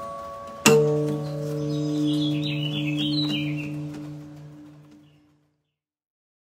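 Acoustic guitar's final strummed chord, struck about a second in and left to ring out, fading away over about four seconds to silence. A bird chirps briefly over the fading chord.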